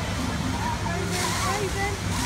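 Water rushing down a log flume's trough and spilling into the river below, a steady hiss that grows brighter about halfway through as a log boat comes down the run. Distant voices carry over it.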